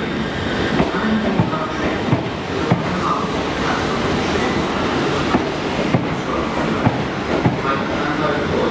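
A GWR multiple-unit passenger train rolls slowly through a station platform with a steady rumble. Its wheels click over rail joints about every half second, with brief light wheel squeals.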